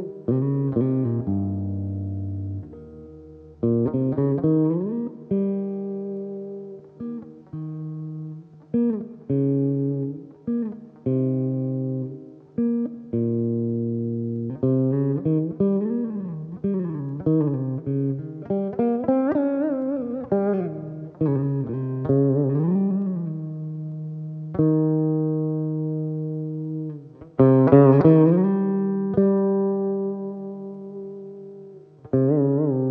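Saraswati veena played solo. Plucked notes ring and fade, many bending smoothly up and down in pitch in Carnatic gamakas, with a louder run of notes near the end.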